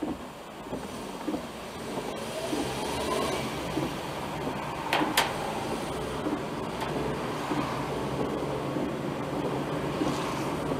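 Car engine and road noise heard from inside the cabin, rising in level and pitch as the car pulls away from a stop. Two sharp clicks about five seconds in.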